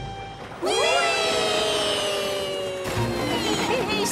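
Several cartoon voices let out one long shared cry of glee on a roller-coaster drop. It starts suddenly about half a second in, scoops up in pitch, then holds and slowly sinks, over background music. Short bits of voice follow near the end.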